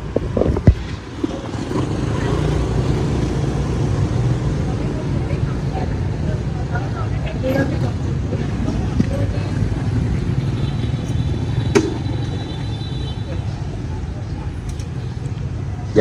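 Street traffic: motorbike and car engines running as a steady low rumble, with indistinct voices of people nearby.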